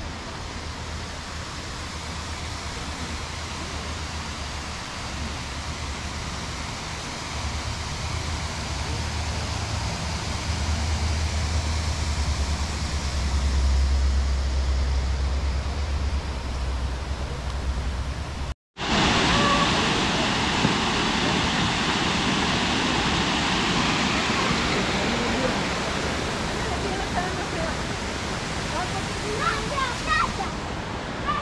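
Steady rush of flowing river water, with a low wind rumble on the microphone in the first half. The sound drops out for an instant about two-thirds through, then comes back louder.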